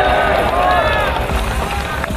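A man's voice at a microphone, with music playing underneath.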